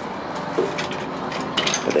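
A glass entrance door being pushed open, its hardware giving a few sharp clicks and knocks near the end, over steady background noise.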